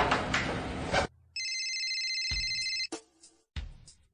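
Film soundtrack: music cuts off about a second in, then an electronic telephone ring sounds once for about a second and a half, followed by a few short low thumps.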